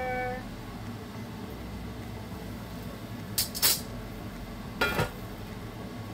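Water boiling in a covered stainless steel wok steamer over a gas burner, a steady low rumble and hiss. Brief sharp knocks come about three and a half seconds in and again about five seconds in.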